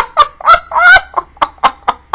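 A woman laughing loudly in a quick run of short bursts, about four or five a second, the first second the loudest and the bursts growing weaker after.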